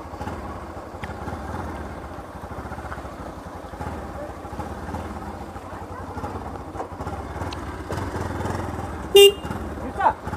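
Bajaj Pulsar NS200 motorcycle's single-cylinder engine running at low speed as the bike creeps along. One short, loud horn beep comes near the end.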